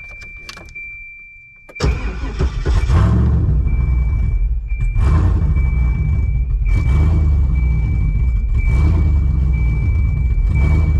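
A 5.3-litre GM LS V8 starting up: a few light clicks, then it fires about two seconds in, flares briefly and settles into a steady idle at around 780 rpm. A thin steady high tone runs underneath throughout.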